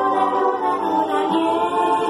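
A girl singing into a handheld karaoke microphone over a backing track, with long held notes.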